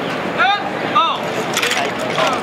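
Two short shouted drill commands, each rising then falling in pitch, about half a second apart, over the steady chatter of a crowd. Near the end come a few sharp clacks of drill rifles being handled.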